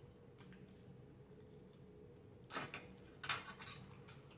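Faint eating and food-handling noises from a fried chicken wing meal: two small clusters of short clicks and rustles in the second half, over a low steady hum.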